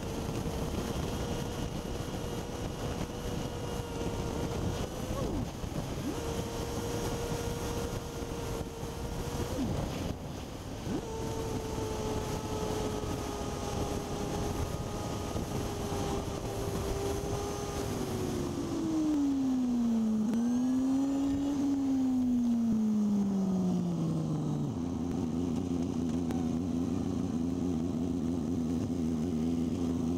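Motorcycle engine running at a steady cruising speed with wind rushing over the microphone, its note briefly dipping twice. About eighteen seconds in the engine note falls as the bike slows down, then settles into a steady idle near the end.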